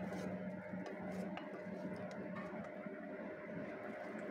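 Faint pouring and trickling of thin, spice-laden liquid from a wok into a pot of beef broth, with a few light clicks.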